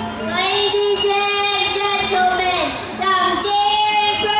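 A high, young-sounding singing voice holding long notes in a song, with a short break about three seconds in.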